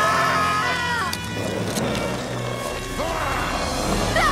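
Cartoon chase soundtrack: music under frightened yelling voices, with a couple of short hits a little after a second in.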